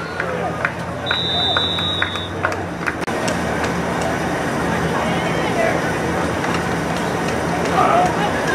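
A referee's whistle blows once, a steady shrill note held for about a second, starting about a second in as a play ends in a tackle. Spectators' voices and chatter run underneath, with a few sharp clacks early on and voices rising near the end.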